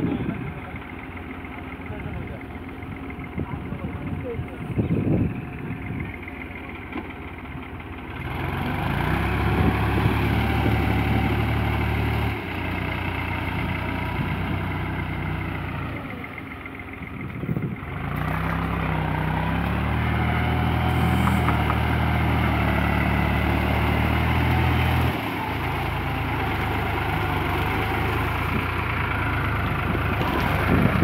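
Tractor diesel engines running in a muddy paddy field. They get much louder about a third of the way in and rev up and down under load, as if working to pull a tractor out of deep mud.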